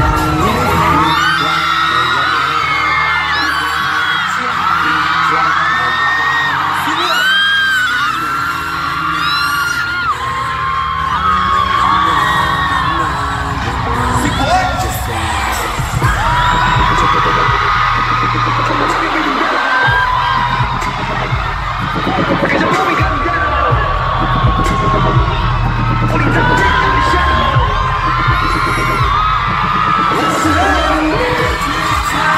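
A live pop dance track playing loud through an arena sound system, with a heavy bass beat, under constant high-pitched screaming and cheering from fans close to the microphone. The bass drops out briefly about twenty seconds in.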